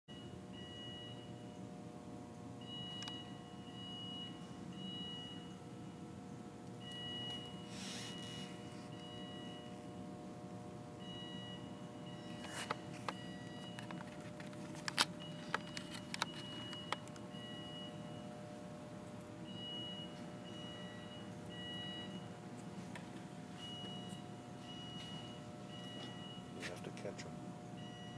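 An electronic beeper sounding in groups of about three short, high beeps, one group roughly every four seconds, over a steady electrical hum. A few sharp clicks and knocks come in the middle.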